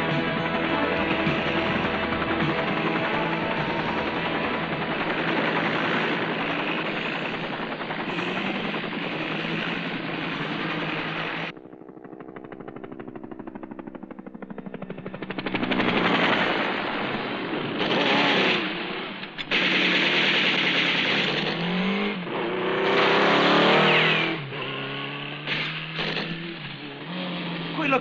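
Film soundtrack of a helicopter's rotor and engine running under music. About eleven seconds in the sound suddenly drops to a rapid, evenly spaced chopping, followed by loud, irregular bursts of gunfire-like noise and engine sounds that rise and fall.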